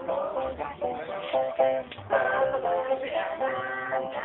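Banjo played live, picking a lively tune of short plucked notes, with a voice singing along.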